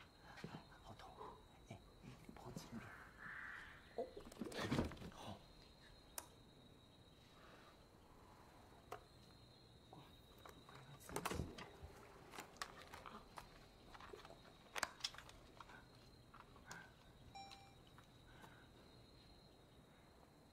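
Quiet indoor scene: a few soft spoken words among scattered rustles, clicks and small knocks, with a louder brief knock or clatter about five seconds in and again about eleven seconds in.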